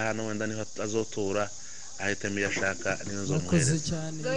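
A person speaking in short phrases with brief pauses, over a steady high-pitched background hiss.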